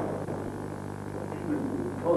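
Faint, indistinct voices in a large bare room over a steady low hum.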